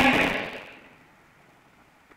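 A man's voice over a public-address system in a large hall, trailing off in the first half second as its echo dies away, followed by faint room tone.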